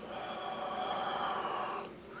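A man's breath rushing across very hot water at the rim of a glass mug held to his lips: one long breath lasting nearly two seconds that stops just before the end.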